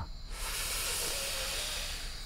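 A deep breath drawn in, heard as a steady hiss on the microphone that starts abruptly just after the beginning and eases off near the end. It is a deliberate in-breath taken on cue during a guided breathing exercise.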